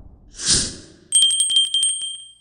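Animated end-card sound effects: a short whoosh, then a bell trilling, struck rapidly about ten times a second for about a second, its ring trailing off.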